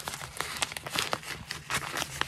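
Crinkling and rustling of a doll's printed garment-bag packaging as it is handled and opened, an irregular run of small crackles.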